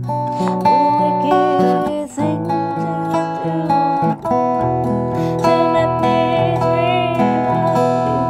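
Steel-string acoustic guitar played with fingerpicks, its chords ringing on under a woman's singing voice.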